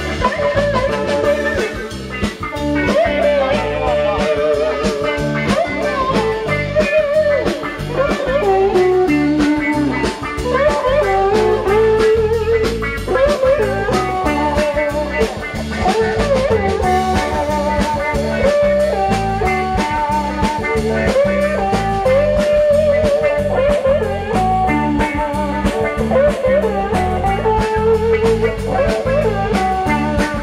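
Live blues band: electric guitar playing a melodic lead with bent, gliding notes over drum kit and a steady low accompaniment.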